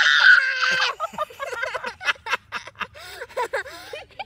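A young girl's loud, pained cry from the burn of a chili in her mouth, followed by a run of small clicks and gulps as she drinks from a glass of milk.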